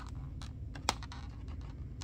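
Fingers handling a paper book page, with soft rustles and small clicks and one sharper tick about a second in, over a steady low hum.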